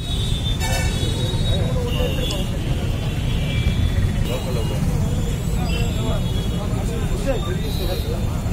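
Outdoor street noise: a steady low rumble of road traffic under indistinct voices of men talking. Two short high tones sound in the first few seconds.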